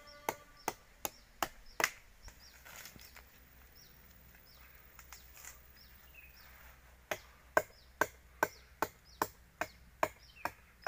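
A blade chopping into the bark of an agarwood (Aquilaria) tree as the bark is cut to be stripped. The sharp wooden knocks come about two or three a second, in a run at the start and another from about seven seconds on, with a pause between.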